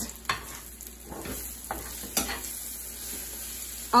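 Eggs and bacon pieces sizzling in a ceramic-coated frying pan while a slotted metal spatula scrambles them, with a few short scrapes of the spatula against the pan; the strongest comes a little past halfway.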